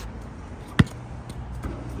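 A basketball bounces once on a hard outdoor court about a second in, a single sharp thud over a low steady background rumble.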